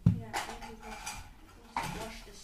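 Hard knocks and light clatter of objects being handled on a wooden table, with the loudest knock just after the start and a few lighter ones after it.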